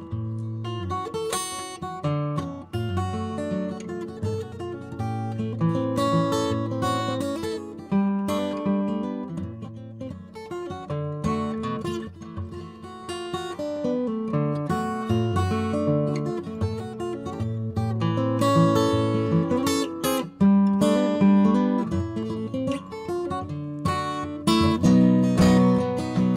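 Steel-string acoustic guitar played solo, with picked notes and strummed chords in the song's instrumental break between sung verses. A capo is on the neck.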